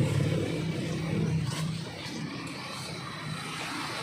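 A vehicle engine running nearby, a steady low hum that drops away just under two seconds in, leaving quieter traffic and outdoor noise.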